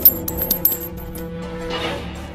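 A few sharp metallic clinks of coins in the first half, over held, sustained background music.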